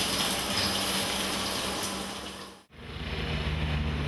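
Microwave oven running with a steady hum and fan hiss, which cuts off abruptly about two and a half seconds in. Road traffic with low engine rumble follows.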